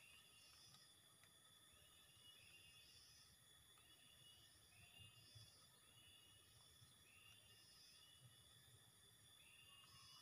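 Near silence, with faint short chirps repeating every second or so.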